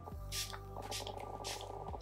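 MAC Prep + Prime Fix+ setting spray misted onto the face: a quick run of several short spritzing hisses, over soft background music.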